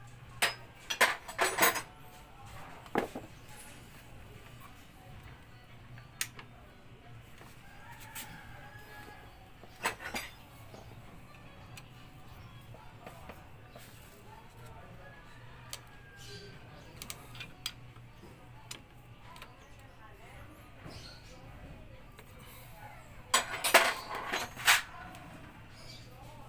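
Metal hand tools and engine parts clinking while a motorcycle's cam chain tensioner is worked on with a screwdriver. The sounds are short sharp clicks and clinks: a cluster about a second in, single ones every few seconds, and another cluster near the end, with quiet between.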